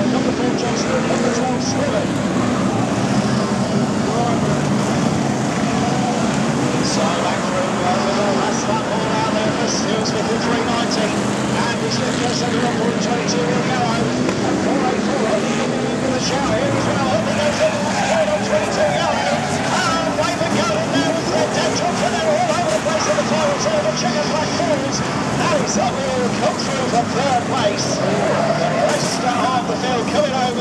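Several BriSCA F1 stock cars' big V8 engines racing round the track: a continuous loud wash of engine notes rising and falling as the cars pass, with scattered sharp clicks.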